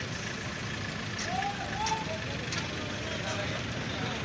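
Steady rumble of a truck engine running, under the voices of people gathered around, with a man's call rising above them about a second and a half in.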